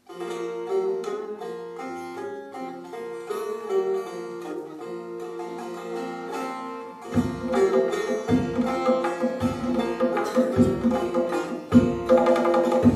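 Live Persian and Kurdish Sufi ensemble music: a plucked string instrument plays a melodic line. About seven seconds in, a hand drum enters with deep strokes a little over a second apart, and the music gets louder.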